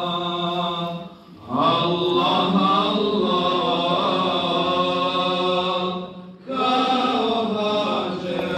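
Male voices chanting an Islamic prayer recitation in long, drawn-out phrases, with short pauses for breath about a second in and again about six seconds in.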